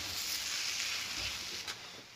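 Scrambled eggs with sausage and vegetables sizzling in a nonstick frying pan as a silicone spatula stirs them. The sizzle dies down in the second half, with a light tap near the end.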